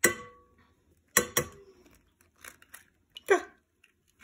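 A brown egg being tapped against the rim of a glass mixing bowl: a sharp tap with a short ring from the glass, two more taps about a second in, then faint crackling as the shell is pried apart. A short, louder muffled sound comes near the end.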